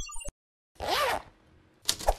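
Sound effects for an animated title logo: a few short electronic blips, then about a second in a whoosh that rises and falls in pitch, with sharp clicks starting near the end.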